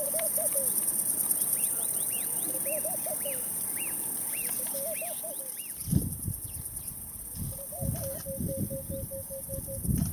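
Birds calling in the bush: a low call repeated in short phrases, and a run of high whistled notes that rise and fall, about two a second, through the first half. From about six seconds in, low rumbling thumps take over, and a low call note is held near the end.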